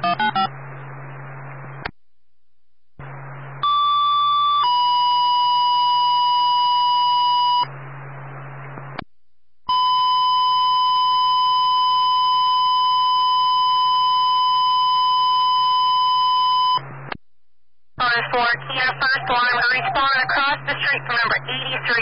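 Fire dispatch paging tones over a scanner radio channel. Short bursts of radio hiss come as the channel keys up, then a two-tone page: a brief higher tone followed by a lower steady tone for about three seconds. After more hiss comes a single long steady alert tone of about seven seconds, and a dispatcher's voice starts near the end.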